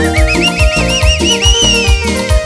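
Live band dance music with a steady thumping bass beat. Over it a high, rapidly warbling whinny-like trill sounds for about two seconds and slides down in pitch at its end.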